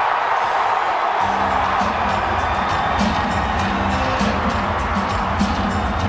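Arena crowd noise after a goal, joined about a second in by music with a steady bass line.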